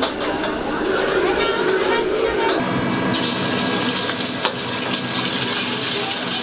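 Crowd chatter along a busy street, giving way a little before halfway to a wok on a gas burner: the steady sizzle of an egg frying in hot oil, with a steel ladle clicking against the wok.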